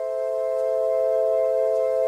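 Sustained pad chord from the Candyfloss sample-based virtual instrument for Kontakt: a held chord of three main notes that has swelled in slowly, rises a little more to its peak about a second in and then holds steady.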